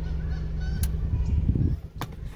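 Steady low hum heard from inside a parked car, with a few short, wavering high calls in the first second. A low rumble builds to a peak about one and a half seconds in, then drops away suddenly.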